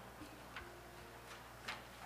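A few faint, irregular clicks over a low, steady hum; the loudest click comes near the end.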